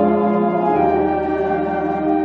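Church choir singing a sung blessing with organ accompaniment, in long held chords that change to a new chord with a lower bass note a little under a second in.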